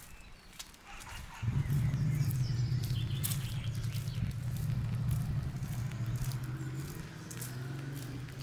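A low, steady motor hum that starts suddenly about a second and a half in and runs on, easing slightly near the end, with footsteps on paving stones through it.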